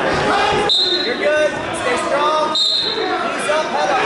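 Overlapping voices of coaches and spectators calling out in a large, echoing gym, with two short high-pitched whistle blasts, the first just under a second in and the second about two seconds later.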